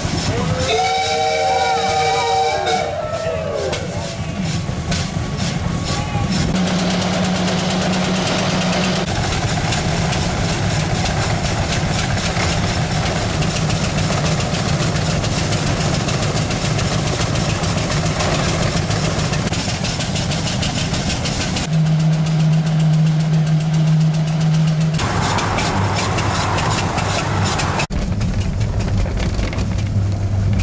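Veteran Cadillac's engine running steadily as the car drives along, heard from on board, its tone changing abruptly at several cuts between clips. About a second in, a whistle-like call glides up and down several times before fading.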